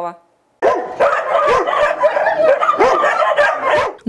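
Loud barking of many dogs at once in a shelter's kennels, a continuous overlapping chorus of barks that cuts in abruptly about half a second in.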